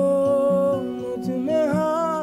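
Song playing: a wordless vocal line, hummed or sung on an open vowel, holds a long note that bends in pitch, then starts a new phrase near the end, over guitar accompaniment.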